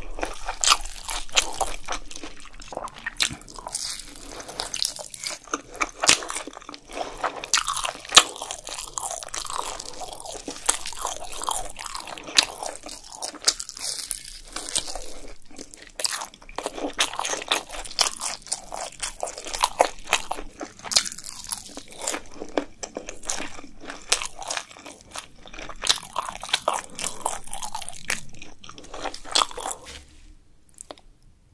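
Close-up crunching and chewing of crisp Korean fried food (twigim), with dense crackles and bites throughout.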